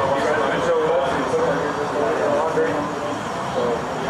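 Indistinct, muffled conversation between people talking a little way off, over a steady background noise.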